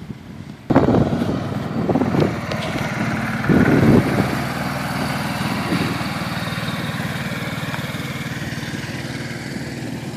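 Engine of a utility vehicle running steadily as it tows a rotary brush over a sand-topdressed putting green, brushing sand into the aeration holes. The sound starts abruptly under a second in and swells briefly about four seconds in.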